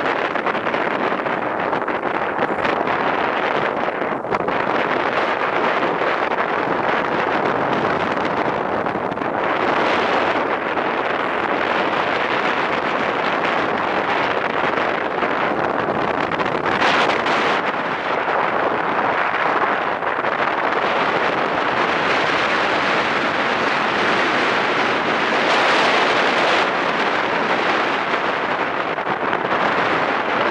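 Steady rush of wind buffeting the microphone on a moving land sailer, mixed with the rumble of its wheels rolling over the dry lake bed's cracked clay, swelling in several gusts.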